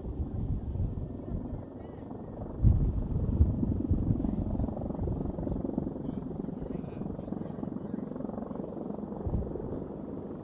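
Marine CH-53E Super Stallion heavy-lift helicopters flying over, a steady low rotor and turbine drone that swells a little about three seconds in.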